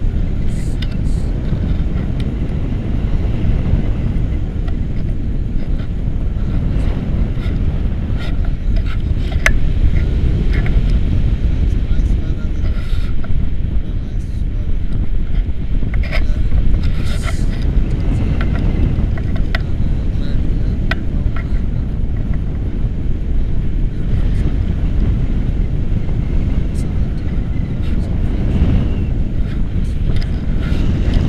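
Airflow of a paraglider in flight buffeting the microphone of a selfie-stick camera: loud, steady wind noise, heaviest in the low end, with a few faint clicks.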